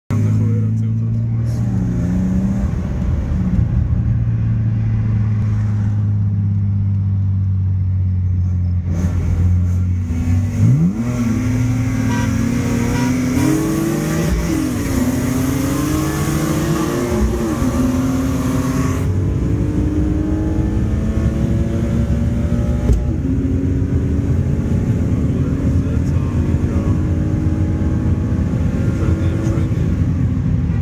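BMW E36 straight-six engines running, heard from inside one of the cars. The revs rise and fall in several blips about ten to eighteen seconds in, then settle back to a steadier engine note.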